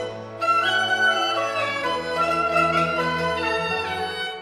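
Instrumental interlude of a Huangmei opera aria: a bowed string melody with sliding notes over sustained orchestral accompaniment, the bass dropping to a lower held note about halfway through.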